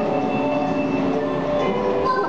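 Ride vehicle of an indoor dark ride running along its track, with the ride's background music playing steadily over it.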